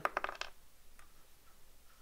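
Small metal hardware clinking: a quick run of light metallic clinks with a short ring as a nut is handled against metal parts, then one faint tick about a second in.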